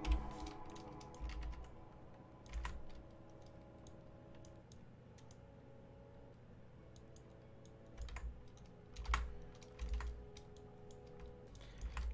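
Scattered clicks and taps from a computer keyboard and mouse, a few at a time. A short run comes at the start, then a quiet gap, then a denser cluster from about eight seconds in.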